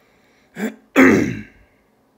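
A person coughing: a short cough about half a second in, then a louder, longer cough that trails off with falling pitch.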